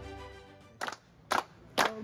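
Background music fading out, then sharp hand claps in a steady beat, about two a second, starting a little under a second in.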